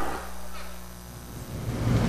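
A lull in the race commentary: faint steady background noise with a low hum, which grows louder near the end.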